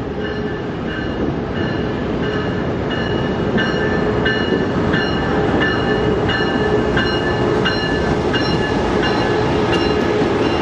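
Amtrak passenger train led by a GE P42 diesel locomotive rolling past, its engine and wheels growing steadily louder as it comes up. A locomotive bell rings evenly, about three strikes every two seconds.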